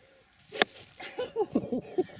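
A golf club strikes a ball off the tee with a single sharp click about half a second in, followed by a voice calling out as the ball flies.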